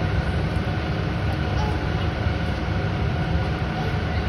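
Steady low rumble of an indoor swimming pool hall's background noise, with faint movement of water.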